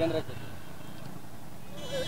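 A man's voice: a short vocal sound at the start, then a pause with only low steady background noise, and a faint drawn-out 'eh' just before he starts speaking again.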